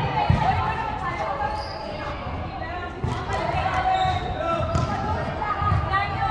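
A volleyball bouncing with low thuds on a wooden sports-hall floor, several times, with the players' voices echoing in the hall.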